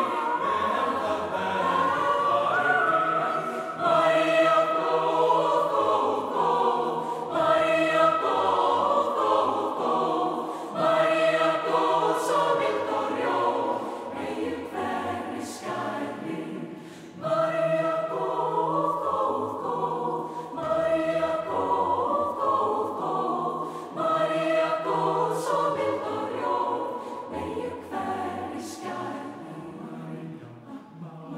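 Mixed choir singing in Icelandic, unaccompanied, in a run of phrases that each open with a swell about every three to four seconds, growing softer toward the end.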